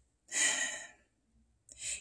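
A breathy sigh, an unvoiced exhale lasting about half a second, followed by a pause and a short intake of breath just before speech resumes.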